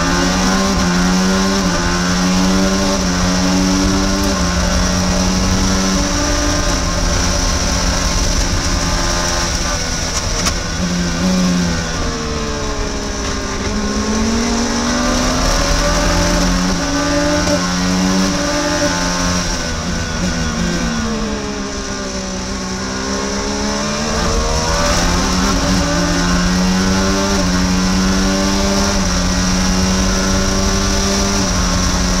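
Onboard sound of an IndyCar's Honda 2.2-litre twin-turbo V6 at racing speed, stepping through gearshifts. The pitch falls twice as the car brakes and downshifts for corners, about 12 and 22 seconds in, and climbs again through the upshifts each time.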